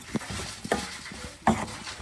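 Wooden spatula stirring chicken pieces and sliced onions in a frying pan, with a light sizzle and a few sharp knocks of the spatula against the pan, the loudest about one and a half seconds in.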